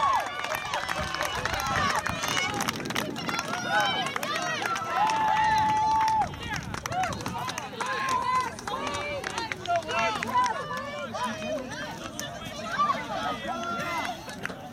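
Indistinct shouts and calls from several voices across an open soccer field, with one drawn-out call about five seconds in.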